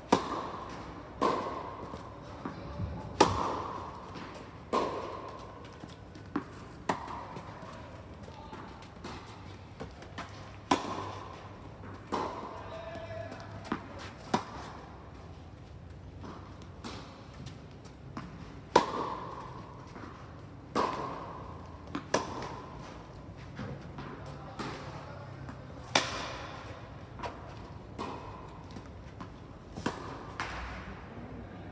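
Tennis balls struck by rackets and bouncing on the court in rallies: sharp pops every second or two, each with a short echo from the indoor hall, with a few seconds' pause in the middle before play resumes.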